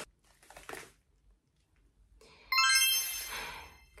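Faint crinkling of a small plastic packet being opened, then a pause, and about two and a half seconds in a short whoosh followed by a bright electronic chime that rings and fades away.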